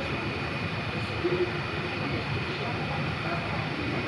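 Steady city background noise on an open-air rail platform: a low rumble with a faint constant high whine, and a brief louder moment about a second in.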